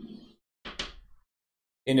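Chalk strokes on a blackboard: a short stroke at the start, then a longer, brighter stroke about a second in as the word is underlined.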